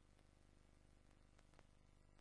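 Near silence: a faint steady hum and hiss with a few faint clicks.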